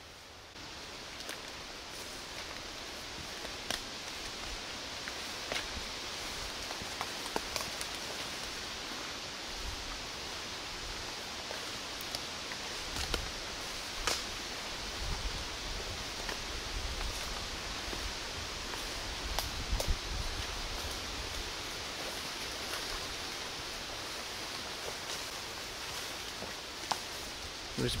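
Footsteps through ferns and undergrowth, the vegetation rustling steadily, with scattered snaps and cracks of twigs underfoot. Wind in the trees adds a steady hiss, with low rumbles of wind on the microphone in the middle stretch.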